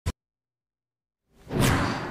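A brief click at the very start, then silence, then a whoosh sound effect that swells up about a second and a half in, as part of a TV newscast's graphic open.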